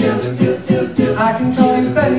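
Mixed a cappella group singing a wordless instrumental backing: sustained vocal chords that shift every half second or so, with sharp vocal-percussion beats keeping time.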